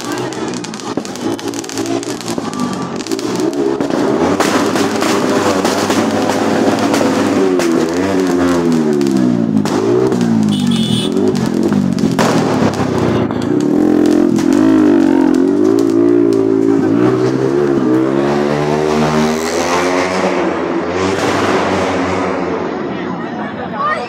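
Fireworks crackling, with frequent sharp cracks. Under them runs a loud pitched drone that rises and falls in pitch again and again.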